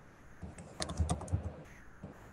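Typing on a computer keyboard: a quick run of keystroke clicks starting about half a second in and lasting about a second.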